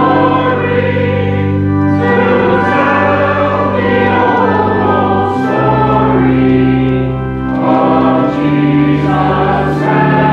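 Church congregation singing a hymn in sustained chords that change every second or two.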